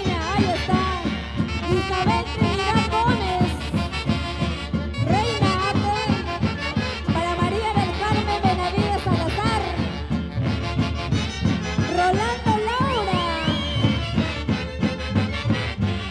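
A Peruvian orquesta típica playing a Santiago tune live: clarinet and saxophones carry the melody over a steady beat.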